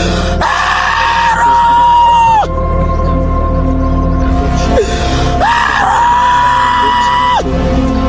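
Worship music with a steady keyboard pad and bass, over which a voice twice lets out a long, loud held cry. Each cry lasts about two seconds, slides up into a high held note, then breaks off.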